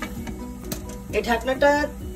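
A voice speaking over background music, the speech coming in about halfway through.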